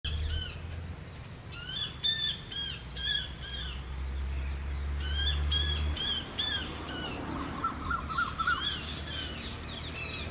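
Harsh, loud bird screams repeated in bursts of several at a time, from a fight in which a large-billed crow attacks a male Asian koel; the screaming is the koel in distress. A quicker run of shorter, lower notes comes near the end.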